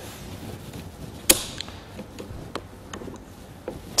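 A single sharp click about a third of the way in, followed by a few faint ticks, as hands handle a trailer coupling head on its drawbar.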